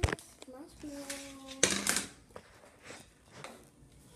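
Mini marshmallows poured from a plastic tub into a foil-lined pan: a sharp knock at the start, then a short loud burst of rustling and pattering just before halfway, with a few light taps after.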